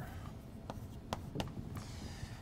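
Chalk writing on a blackboard: light scratching with a few short, sharp taps of the chalk about midway.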